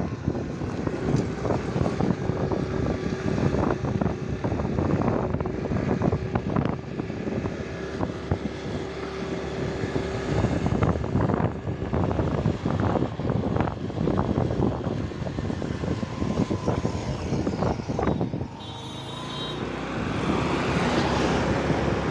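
Road and engine noise from a moving vehicle, with wind buffeting the phone's microphone in irregular gusts. A steady hum runs under the first half, and the noise dips briefly and then rises again near the end.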